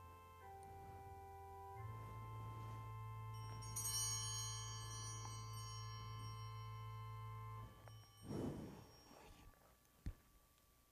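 Pipe organ playing soft held chords over a low pedal note. The chord changes twice early on, and a brighter high register joins about four seconds in. The last chord is released after about eight seconds, followed by a brief rustle.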